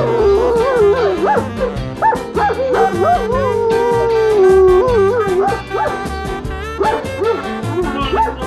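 Dog howling, its pitch wavering up and down in long drawn-out notes, with one long held note about halfway through, over background music with a steady beat.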